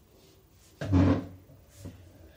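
A dull thump about a second in, then a lighter knock near the end, from a glass jar of filtered water being handled against a wooden tabletop before pouring.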